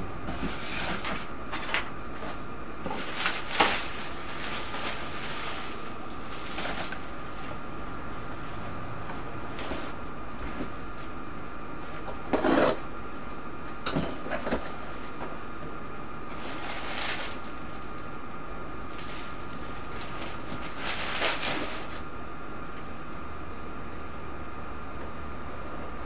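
Bubble wrap and cardboard packaging rustling and crinkling in brief bursts, about seven times, as a boxed item is unpacked by hand, over a steady background hum with a faint high tone.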